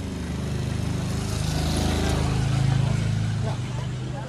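Small motorcycle engine running as it pulls away and passes close by. It gets louder over the first three seconds, then drops away shortly before the end.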